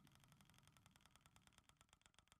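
Near silence with faint, evenly spaced ticks, about five a second and slowing slightly: the tick sound of an online mystery-box spin wheel as items pass the pointer while it spins down.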